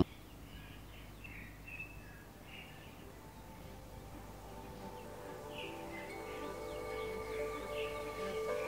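Faint, scattered bird chirps. Background music with steady held notes fades in gradually from about halfway through.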